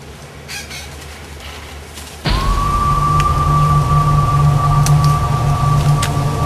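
Dramatic film-score cue: a deep rumbling drone comes in suddenly and loudly about two seconds in, with a single high tone held steady above it.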